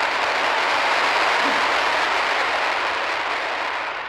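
Audience applause, a dense steady clatter of clapping that begins to die away near the end.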